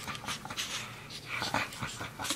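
A pet baby monkey right at the microphone, making a quick string of short breathy sounds, several a second.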